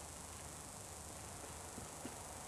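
Faint, steady hiss with no distinct event: the quiet soundtrack of a VHS tape recording of a television broadcast.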